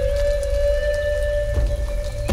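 Native American flute holding one long steady note over a rain sound, with scattered sharp drop-like clicks and a low rumble underneath.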